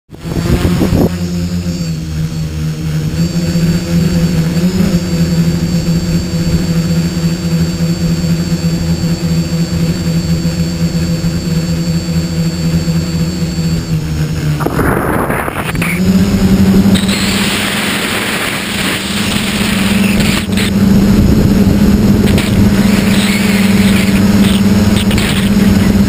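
Electric motors and propellers of a hobby tricopter humming at a steady pitch, heard from a camera mounted on the craft. About 15 seconds in there is a brief rushing noise, after which the hum holds at a slightly higher pitch with more hiss over it.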